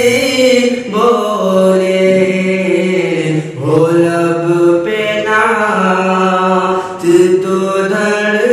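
A man singing a naat (Islamic devotional poem) solo, in long held notes that bend and slide between pitches. The singing breaks for brief breaths about a second in, halfway through and near the end.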